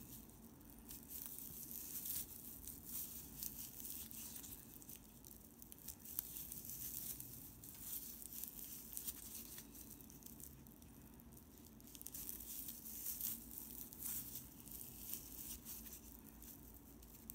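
Faint, irregular rustling and crinkling of shiny tape yarn being pulled through stitches with a metal crochet hook while single crochet is worked, with small light ticks now and then.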